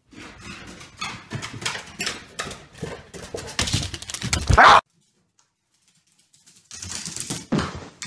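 A dog scrambling on hardwood stairs and floor: a fast, uneven run of claw clicks and knocks, ending with the loudest thump a little before five seconds in. After a short silence there are more scuffling knocks near the end.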